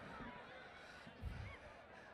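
Almost silent pause in a speech over a PA: faint background noise of the event venue, with a few faint distant cries and one soft low thump a little over a second in.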